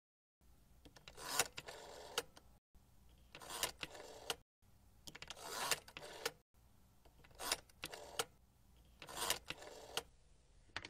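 A rotary telephone being dialled, five turns of the dial about two seconds apart. Each turn is a swelling whirr that peaks in a sharp click, followed by a few quieter clicks as the dial runs back.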